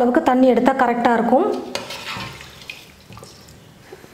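A woman's voice, then from about halfway through a steel ladle stirring thin chicken gravy in a large stainless-steel pot, with a faint clink against the pot, fading away.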